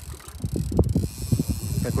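Wind buffeting the microphone on an open boat: an irregular low rumble of gusts.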